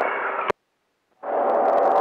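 Radio receiver audio switching over: a short stretch of hiss is cut off by a click about half a second in, followed by dead silence for well over half a second, then the receiver's hiss comes back with a steady whistle as another station keys up.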